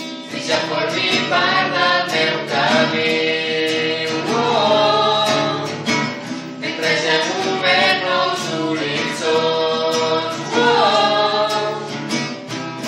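A small group of voices singing a song together, accompanied by an acoustic guitar.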